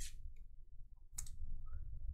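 Trading card sliding into a rigid plastic top loader: short, faint plastic scrapes and clicks, one right at the start and another about a second in.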